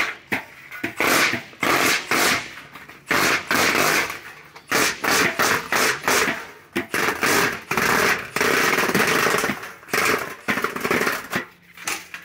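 Cordless impact driver turning a Malco drill-powered crimper along the edge of a galvanized steel duct pipe, hammering in a series of loud bursts with short pauses between them as the pipe end is crimped.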